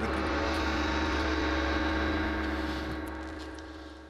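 Studio quiz-show sound effect: a sustained synthesized chord over a deep hum, holding steady for about two and a half seconds and then fading away.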